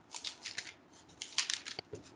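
A few short, scratchy rustling noises in two quick clusters, faint and picked up by a participant's microphone on an online call.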